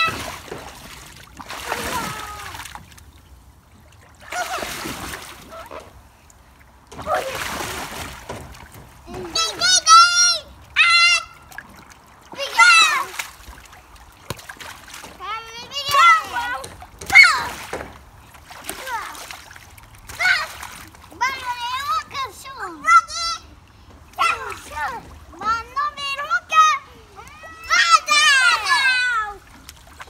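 Young children splashing through the water of a shallow inflatable paddling pool, in noisy bursts over the first eight seconds or so. After that the children's high-pitched voices call out again and again, the loudest sounds here.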